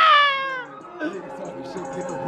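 A high-pitched, meow-like vocal squeal that falls in pitch over about half a second, then softer background music with faint voices.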